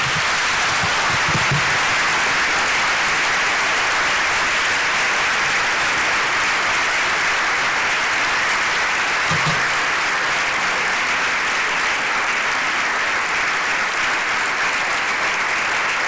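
Audience applause, a dense, steady clapping from many hands that holds at an even level.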